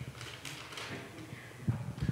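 Handling noise from a handheld microphone being passed over and gripped: soft rustling, then a few low knocks near the end.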